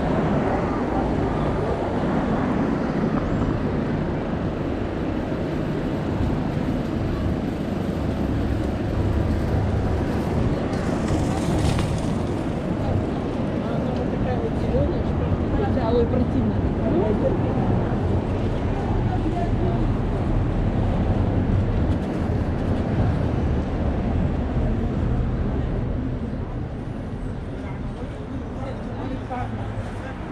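Busy city street ambience: a steady rumble of road traffic with passersby talking.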